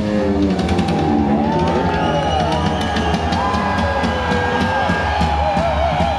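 Live rock band playing loud through an arena PA: electric guitar notes that slide and bend over a steady drum kit and bass.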